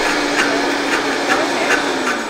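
Large countertop blender running on high, its motor pitch sagging slightly near the end, with irregular ticks on top. It is blending a small batch of cashews and water that the jar is too big for, so the nuts blend poorly and leave pieces.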